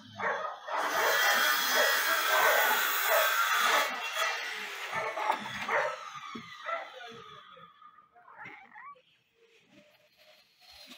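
Several dogs barking, loudest and densest in the first few seconds, then thinning out and fading away.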